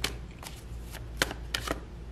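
A deck of oracle cards being shuffled by hand: about five crisp, irregular card snaps and taps.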